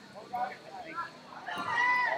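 People's voices shouting, the loudest a high-pitched yell near the end.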